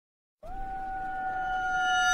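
Silence, then about half a second in, a single held electronic tone slides briefly up onto one steady pitch and swells gradually louder, with higher overtones joining in: the build-up of an intro music sting for an animated logo.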